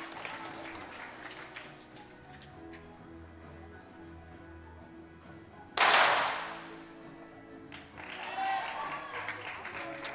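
.22 sport pistol shot: one sharp report about six seconds in that rings out briefly through the range, over steady background music.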